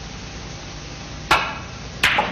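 Snooker cue tip striking the cue ball: a single sharp click about a second in, with a short ring, over a steady low background hiss.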